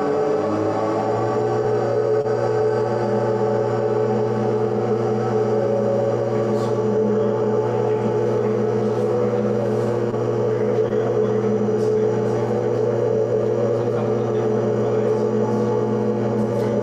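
Ambient drone music: layered, steady sustained tones, with a deep low tone entering just after the start and holding underneath.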